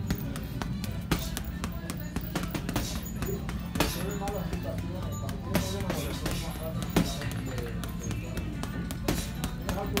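Boxing gloves smacking a double-end bag in quick, irregular bursts of punches, with the bag snapping back against its cords, over background music with singing.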